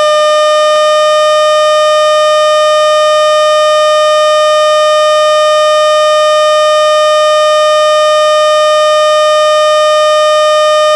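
Electronic noise box droning a loud, steady buzzing tone with a full set of overtones. As a knob is turned early on, a second, lower tone slides down and settles into a steady hum beneath the drone.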